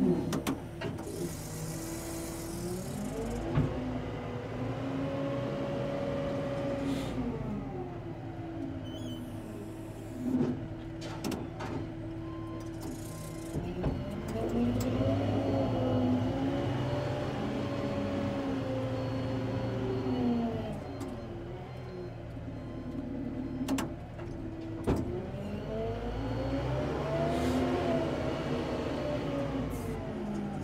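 The diesel engine of a SkyTrak 8042 telehandler revving up, holding, and dropping back toward idle three times, with a few clunks in between.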